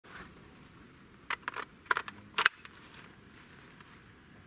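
Metallic clicks and clacks of an AK-74 rifle being handled and loaded. About a second and a half in there is a quick run of sharp clicks, in three or four small groups over about a second.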